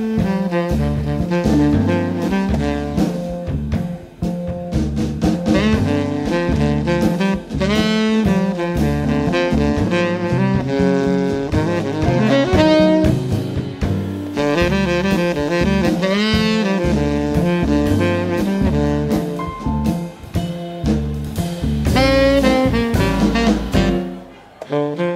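A live jazz quartet playing: a tenor saxophone leads the melody over piano, acoustic double bass and drum kit.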